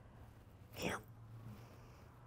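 A woman's single brief, choked "yeah" about a second in, falling in pitch, from someone on the verge of tears; otherwise quiet room tone with a low hum.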